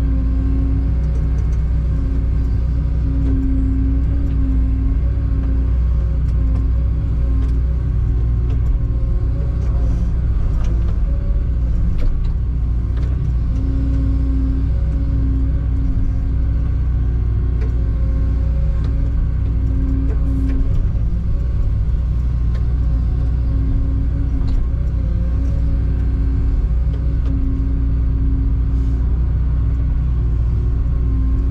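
CAT 314 excavator's diesel engine running steadily under working load, heard from inside the cab. A higher hum comes and goes over the low drone as the machine digs and swings.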